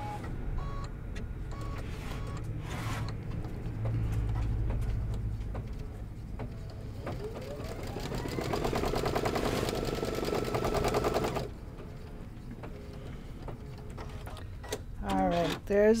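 Computerized embroidery machine (Brother Luminaire 2 Innov-is XP2) stitching out a tack-down placement line. It hums at first, then about six seconds in the motor whines up to speed and runs in a fast, even needle rattle for about five seconds before stopping abruptly.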